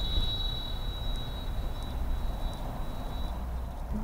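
Outdoor ambience: a low, steady rumble with a thin, high-pitched steady drone that fades out about three seconds in.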